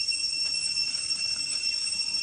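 Cicadas droning in the forest: a steady, unbroken high-pitched whine with a shriller tone above it.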